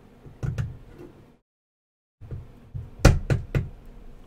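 Knocks and clicks of a 3D-printed plastic mini bobsleigh being handled on a wooden desk as a small figure is pushed onto its peg. There are a couple of light clicks in the first second and a brief dead silence, then three sharp knocks close together about three seconds in.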